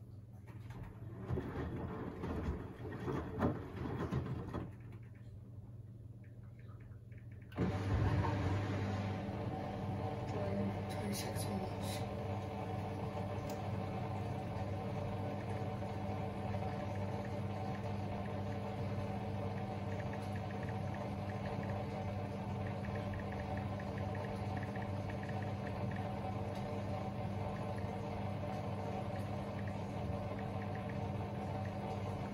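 Samsung WW90J5456FW front-loading washing machine: the drum turns the wet laundry for a few seconds with an uneven swishing. After a short pause, the drain pump switches on suddenly about seven seconds in and hums steadily while the drum stands still.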